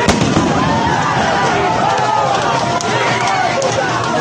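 A crowd of protesters shouting and calling out, with one sharp bang right at the start and a few fainter pops after it.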